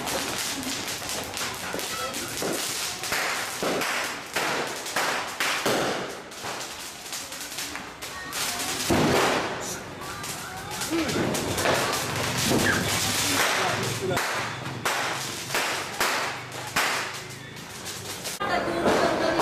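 Firecrackers going off in quick succession, a dense, irregular run of sharp cracks, with voices in between.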